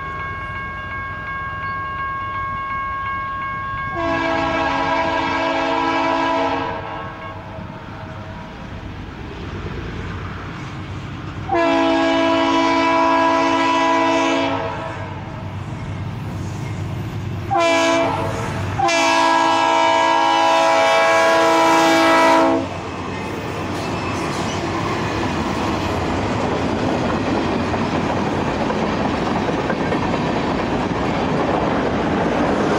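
A BNSF GE C44-9W diesel locomotive's air horn sounds the grade-crossing signal: long, long, short, long. The freight train then rolls past with a steady noise of wheels on rail.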